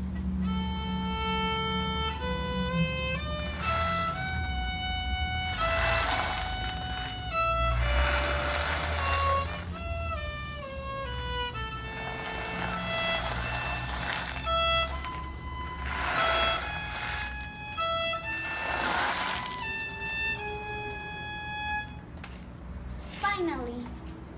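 Solo violin played with a bow: a slow melody of held notes stepping up and down in pitch. It stops about two seconds before the end, and a voice briefly follows.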